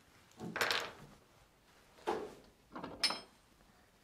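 A drawer sliding open and shut in three short bursts of scraping and knocking. The last, about three seconds in, ends in a sharp metallic clink as a metal leather hole punch is picked up.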